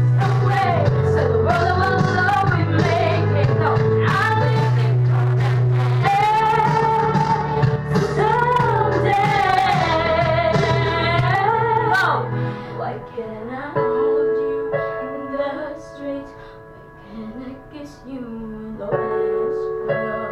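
A boy's unbroken voice singing a slow pop ballad over an instrumental accompaniment with held bass notes. About twelve seconds in the singing stops and the accompaniment carries on more quietly.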